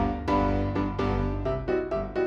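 Background music led by piano: a steady run of struck notes over a low bass line.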